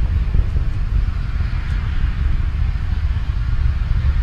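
Steady low rumble of a Falcon 9 rocket's nine Merlin 1D first-stage engines during ascent, heard from the ground.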